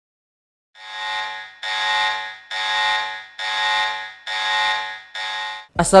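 An electronic alarm buzzer sounding six times in even, buzzy pulses, a little under a second each, starting about a second in.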